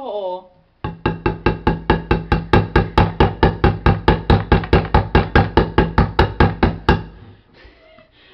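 A pointed metal tool stabbed rapidly and evenly into the lid of a steel food can, punching at it to open the can without a can opener. The sharp metallic knocks come about four to five a second, starting about a second in and stopping about a second before the end.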